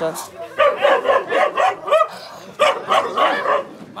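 A dog barking in two quick runs of short barks, with people talking over it.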